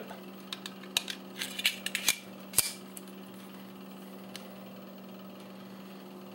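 Light metallic clicks from a stainless 1911 pistol and its steel magazine being handled, as the magazine is slid into the grip and seated. There are several clicks in the first three seconds, the sharpest about two and a half seconds in, over a steady low hum.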